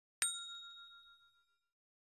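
A notification-bell 'ding' sound effect for a subscribe animation. It is a single bright chime struck about a quarter second in and ringing out over about a second and a half.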